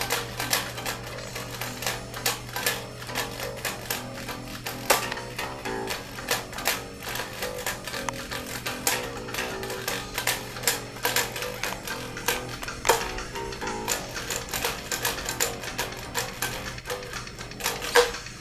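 Electric bass played fast, a thrash metal bass line heard as rapid, clicky plucked notes from the strings.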